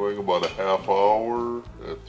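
A person's voice making a drawn-out, wordless vocal sound that rises and falls in pitch for about a second and a half, then stops.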